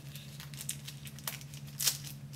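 Nylon webbing of a pedal strap rubbing and scraping as it is pushed through the holes of a plastic pedal body, in a few short brushes with the loudest near the end. A steady low hum runs underneath.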